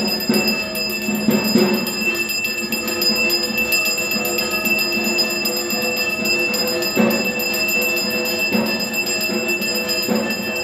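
A puja hand bell rung continuously, its steady metallic ringing tone held throughout.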